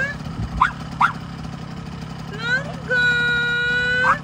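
Small 50cc dirt bike engine idling steadily, with a toddler's long, level-pitched squeal near the end and two short rising yips about half a second and a second in.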